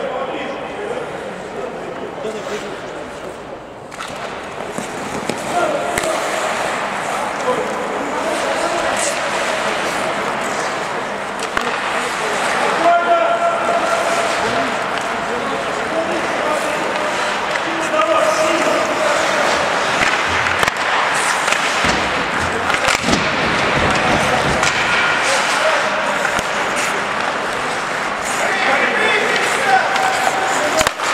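Ice hockey in play: skate blades scraping and carving on the ice, with sticks and puck clacking now and then and players calling out. It picks up about four seconds in, after the faceoff.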